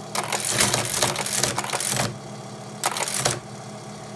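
Teletype Model 15 clattering as characters are typed and printed: a run of rapid mechanical strikes for about two seconds, then a shorter burst about three seconds in. The steady hum of its running motor lies underneath.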